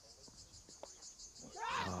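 Faint, steady high-pitched insect chirring with a regular pulse, heard over quiet open-air ambience. A single faint knock comes a little under a second in, fitting the ball taking the bat's outside edge, and a commentator's "Oh" follows near the end.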